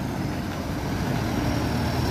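Slow road traffic passing close by: the engines of cars and a heavy tanker truck running at low speed, a steady low rumble that grows a little louder as the truck draws near.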